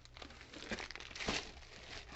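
Plastic wrapping of a jumbo pack of maxi pads crinkling as it is handled, in short irregular rustles, the loudest a little past the middle.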